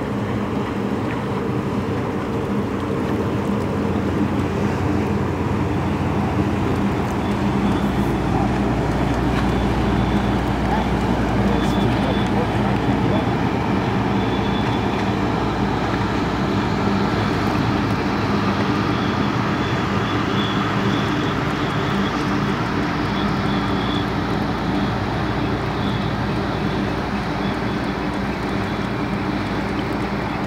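Steady low drone of a tugboat's engine passing close by, growing slightly louder in the middle and easing off toward the end.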